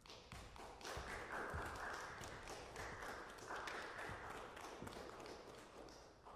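Applause from a small audience, many claps blurring together; it starts suddenly and dies away near the end.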